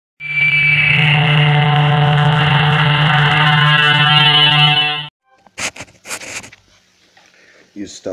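A loud, harsh, distorted drone held on one steady pitch for about five seconds, which cuts off suddenly, followed by a few short hissing bursts.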